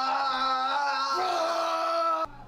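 A young man's long, held yell at a steady pitch, stepping slightly higher about a second in.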